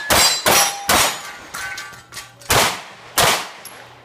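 Open-division 9mm major race pistol firing a quick string of three shots, then two more after a pause of a bit over a second. Steel targets ring after the hits.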